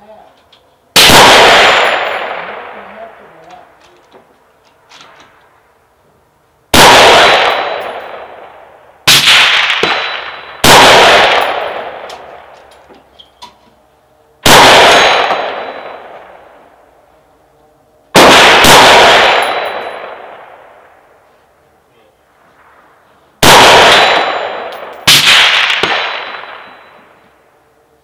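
Daniel Defense DDM4v11 AR-15 rifle with a 16-inch barrel firing .223 Remington rounds slowly, one at a time: about eight loud shots at uneven intervals of one and a half to five seconds. Each crack is followed by a long echo that dies away over two to three seconds.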